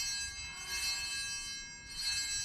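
Altar bells rung at the elevation of the consecrated host: a cluster of high, ringing tones, shaken again about half a second in and just before the end, ringing on between strikes.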